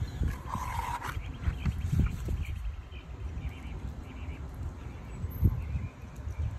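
A plastic measuring cup scooping thick cornstarch-and-baking-soda chalk paint from a plastic bowl and pouring it into a plastic squeeze bottle. There are a few dull knocks over a steady low rumble.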